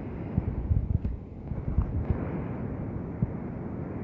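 Wind buffeting the microphone in irregular low rumbles and thumps, over a steady outdoor background hiss.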